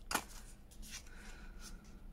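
Faint rustling and sliding of sheets of paper being handled and shuffled by hand, with a short crisp rustle near the start.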